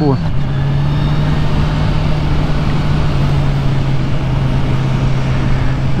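Kawasaki Ninja 1000SX's inline-four engine running at a steady engine speed while riding, its drone unchanging, under a constant rush of wind and road noise.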